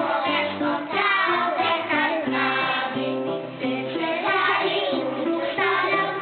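A small group of young children singing a children's song together over steady instrumental accompaniment.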